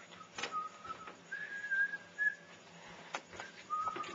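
A person whistling a few short, slightly wavering notes, the longest held for about a second, with a few sharp knocks between them.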